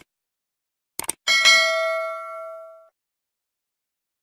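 Subscribe-button animation sound effect: two quick clicks, then another double click about a second in, followed by a bright notification-bell ding that rings out for about a second and a half.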